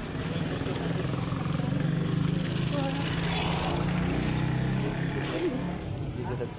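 A motor vehicle's engine running close by as a steady low drone, growing louder over the first two seconds and easing off near the end, with voices faintly in the background.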